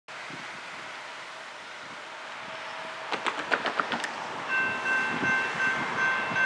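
Horn of an approaching Norfolk Southern EMD SD70ACC locomotive sounding in the distance from about four and a half seconds in: a steady multi-note chord broken into blasts. Under it the train's rumble grows louder, with a few short clicks shortly before the horn.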